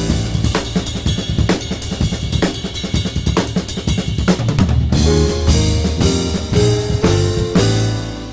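Jazz drum kit playing a short solo break on snare, bass drum and rims, with the rest of the band mostly dropped out; about five seconds in, the quartet with bass and melody comes back in.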